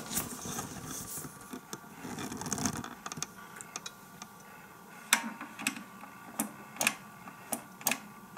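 Plastic parts of a Moulinex Masterchef 750 food processor being handled, with the motor not running: a rustling scrape for the first three seconds, then a string of sharp, irregular plastic clicks from about five seconds in.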